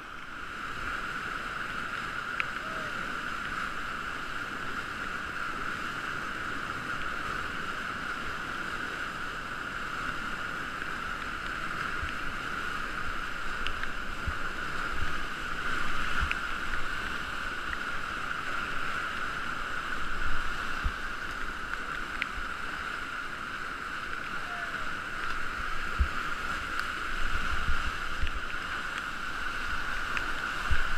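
Steady rush of churning whitewater on a river standing wave, heard from a kayak surfing it. Short low knocks come now and then in the second half.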